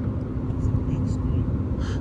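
Steady low outdoor rumble with a constant droning hum, unchanged throughout.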